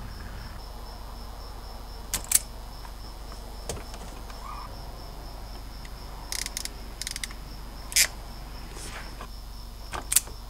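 Scattered sharp clicks and short click runs from a hand crimping tool being worked on wire terminal pins, the loudest about eight seconds in. A faint high chirp pulses steadily about four times a second underneath.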